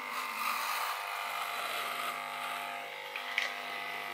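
Corded electric hair clippers running with a steady buzz while cutting short hair close to the scalp, with a brief tap about three seconds in.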